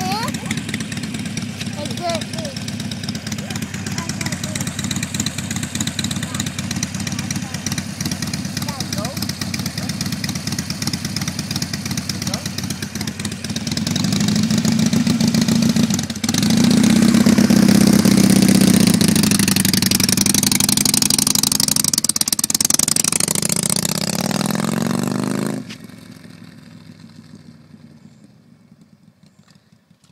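Harley-Davidson V-twin motorcycle engine running with a steady drone. It grows much louder about halfway through, with a rushing hiss over it, then cuts off abruptly a few seconds before the end.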